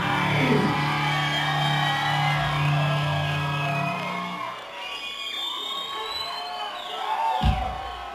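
A live rock band's final chord ringing out on amplified guitars and bass, cutting off about four and a half seconds in. After it, the crowd cheers with whoops and yells, and there is a low thump near the end.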